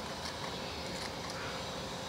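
Hand pruning shears snipping through a banana peel, a few faint short clicks over a steady low background hiss and hum.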